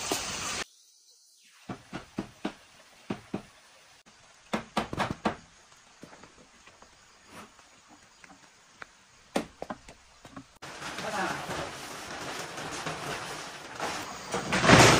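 Footsteps: a scattered series of short knocks and scuffs as someone walks. About ten seconds in they give way to a steadier, louder rustling.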